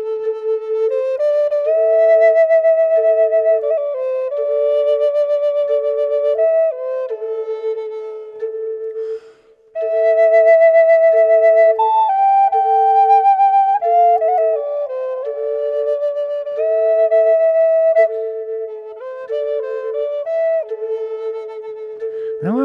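Two A minor Native American flutes: a steady, pulsing single drone note from the lower flute's top note, with a slow stepwise melody played on the higher flute above it, the pair sounding an octave apart and in tune. The melody pauses briefly about halfway through.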